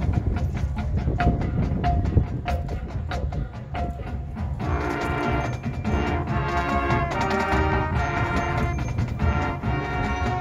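High school marching band performing its field show: drum and percussion hits over a low rumble, then the brass and woodwinds enter with held chords about five seconds in.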